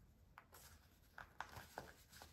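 Faint rustling of folded printer-paper pages being handled at the edge, with a few short, soft crackles as a tear is being started.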